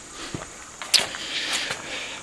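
Two sharp clicks, like footsteps or handling, over the steady high buzz of crickets.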